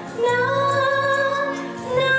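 A female solo voice singing through a microphone, holding one long sustained note that begins just after the start and tails off near the end.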